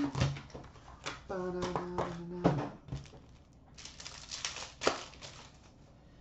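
Foil-wrapped hockey card packs being handled and set down with light clicks and crinkles, then a pack wrapper torn open with a crinkling rip about four seconds in. A short steady hum sounds in the middle.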